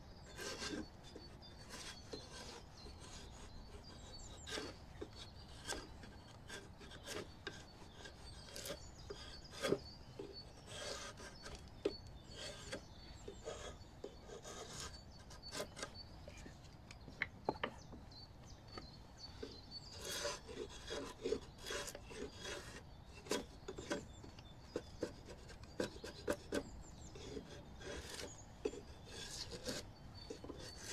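Drawknife pulled in short scraping strokes along a length of branch clamped in a wooden shave horse, shaving off wood. The strokes come in irregular runs with pauses between, closer together in the second half.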